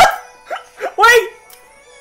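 A person's short, loud yelping cry, dog- or wolf-like, about a second in, after two smaller yelps. Music plays faintly underneath.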